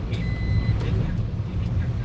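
A steady low rumble, with one short high-pitched electronic beep lasting about half a second soon after the start.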